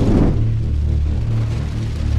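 Cinematic logo-sting sound effect: a brief whooshing hit at the start, then a steady, low rumbling drone that slowly fades.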